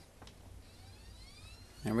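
Faint click of the laptop's power button, then the external LG DVD drive spinning up its install disc: a faint, steadily rising whine of several tones lasting about a second, cut into by a voice near the end.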